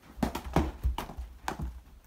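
Footsteps and handling bumps while a hand-held phone camera is carried along: a quick, uneven run of sharp taps with low thuds beneath them.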